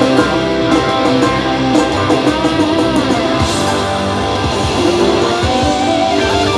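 Live rock band playing an instrumental stretch with no vocals: electric guitars held and soloing over bass and drums, steady and loud.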